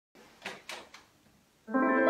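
Three finger snaps, about a quarter second apart, counting in, then an electric keyboard with a piano sound strikes a sustained chord near the end.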